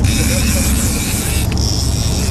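Fishing reel drag buzzing as a hooked white sturgeon pulls line off the reel just after the hook set. It runs over a steady low rumble.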